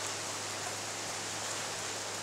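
Steady background hiss with a faint low hum underneath, even throughout, with no distinct handling sounds.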